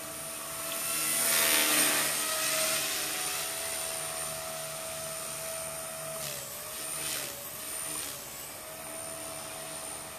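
HK-250GT electric RC helicopter flying: a steady high-pitched motor and rotor whine that swells louder about two seconds in as it comes close, then dips briefly in pitch twice a little past the middle before settling again.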